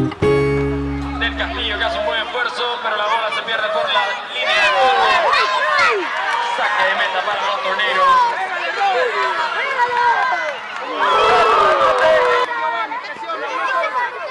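Background music ends on a held chord about two seconds in. Then come many overlapping voices shouting and calling, the sound of players and spectators at a youth football match, with louder bursts of shouting partway through.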